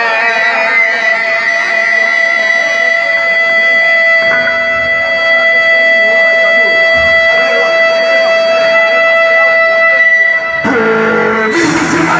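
Rock band music: a long sustained guitar note held steady over quieter accompaniment for about ten seconds, then the full band comes in with a denser, fuller sound near the end.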